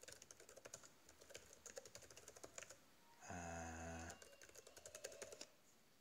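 Faint computer keyboard typing, a quick run of keystrokes that stops about half a second before the end.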